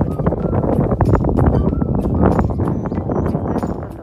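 Wind buffeting a handheld phone's microphone in a heavy low rumble, with dense irregular crunches and clicks of footsteps on a dirt path. It fades somewhat near the end.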